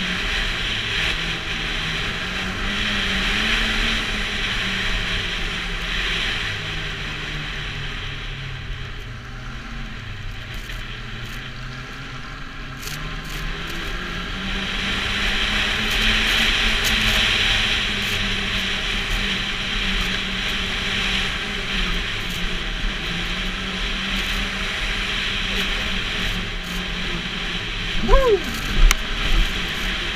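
Snowmobile engine running under way, its pitch rising and falling as the throttle opens and eases off, over a steady hiss of the track running on snow. A person's voice breaks in briefly near the end.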